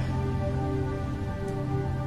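Background film-score music of soft, sustained held tones over a low steady drone.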